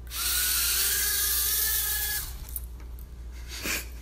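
Mini quadcopter drone's small electric motors and propellers running as a loud, high buzzing whine, edging up in pitch as they spin up, for about two seconds before cutting off abruptly.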